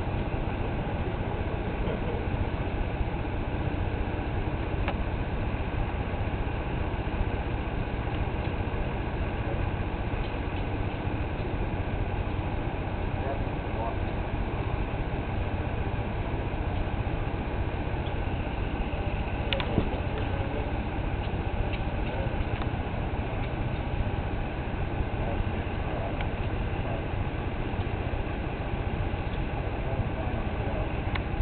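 Steady low rumbling noise with a few faint clicks, the loudest of them about two-thirds of the way through.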